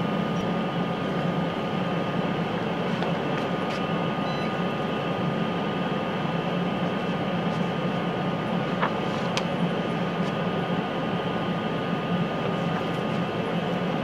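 Steady machine hum of room ventilation or instrument fans, with a thin high whine held throughout and a few faint clicks.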